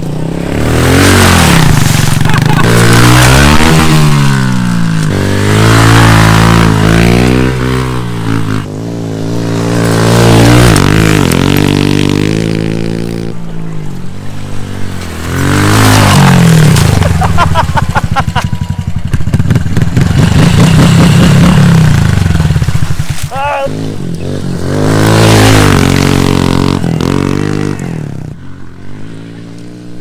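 Honda CRF110 pit bike's small four-stroke single-cylinder engine revving hard. Its pitch climbs and drops again and again as it accelerates and shifts, in five or six loud swells that fade between passes.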